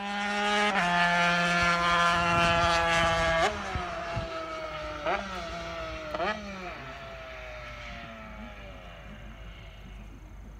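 Small Honda two-stroke road-racing motorcycle engine screaming at high revs, then blipping sharply about three times as it downshifts and slows, its note falling and fading away.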